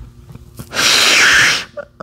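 A man's loud, breathy burst of air into a close microphone, lasting just under a second, starting about two-thirds of a second in.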